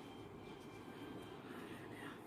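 Faint, steady low background noise with no distinct event.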